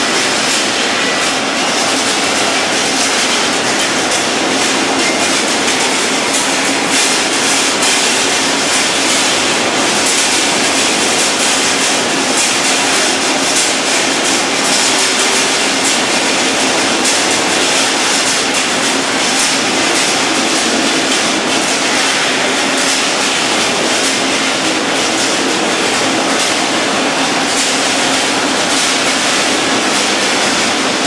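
Industrial machinery running continuously, a loud, steady mechanical clatter made of rapid fine clicks.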